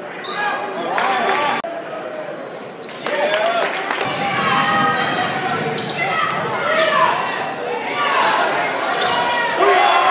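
Basketball bouncing on a hardwood gym court during play, with several sharp bounces, over crowd voices and shouts that echo in the large gym.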